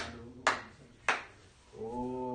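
Three sharp hand claps, slow and spaced about half a second apart, each ringing briefly in a small room. Near the end a man's voice sounds briefly.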